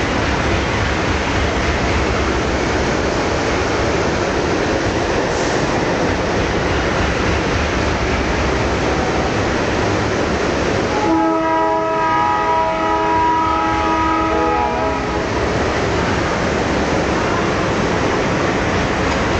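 Loud steady rumbling noise of a train on the move. A little past the middle a train horn sounds for about four seconds, a chord of several steady tones.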